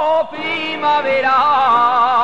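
Navarrese jota singing: a solo voice holding long, ornamented notes with strong vibrato. It breaks off briefly about a quarter second in, then starts a new phrase.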